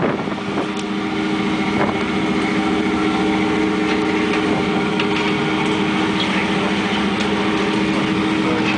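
Fishing boat's engine running steadily, a constant even hum, with a few faint knocks.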